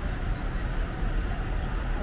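City street traffic noise: a steady low rumble of vehicles on the road.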